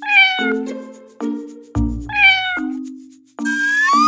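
Domestic cat meowing twice, each meow about half a second long and falling in pitch, over background music with a steady beat. Near the end comes a longer sound that rises in pitch.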